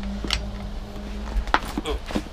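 Hand ratchet pipe threader cutting a thread on a steel pipe: sharp metallic clicks of the ratchet and die, one early and several in quick succession about one and a half seconds in, over a steady low hum.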